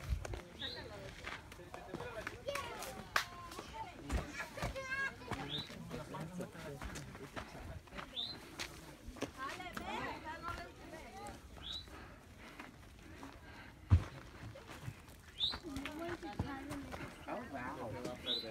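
Faint, indistinct voices of people walking on a trail, with scattered footsteps and knocks, the loudest a thump about two-thirds of the way in. A short, high, falling chirp repeats every few seconds.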